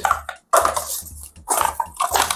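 Paper cups being handled and stacked on a wooden table at speed, with two quick clattering knocks about half a second and a second and a half in.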